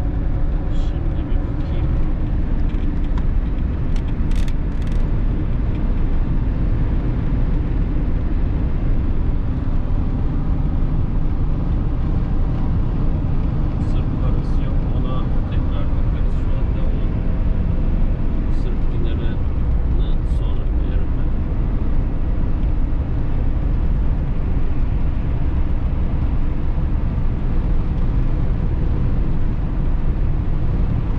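Steady engine and tyre rumble heard inside the cab of a Fiat Ducato camper van cruising on a motorway, with a few faint clicks.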